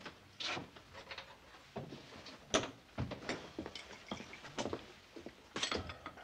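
Scattered light knocks and clicks of restaurant and bar activity, a dozen or so irregular taps over a faint room background.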